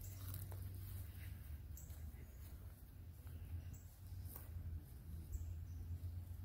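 Outdoor woodland ambience: a steady low rumble with scattered faint, high-pitched chirps.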